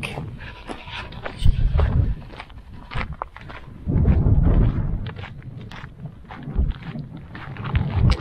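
Footsteps on a stony, gravelly hiking trail, with irregular low gusts of wind rumbling on the microphone twice.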